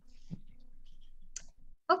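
Computer mouse scroll wheel clicking in a fast, even run of small ticks as a document is scrolled, stopping shortly before the end.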